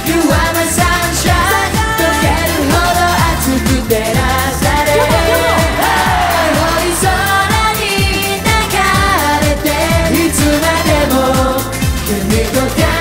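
Live J-pop song through a concert sound system: an upbeat dance track with a steady beat and sung vocals.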